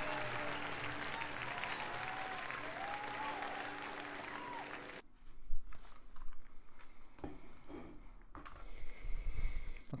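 Concert crowd applauding and cheering as a live song ends, with a few short whoops, cut off abruptly about halfway through. After that only faint knocks and rustling remain.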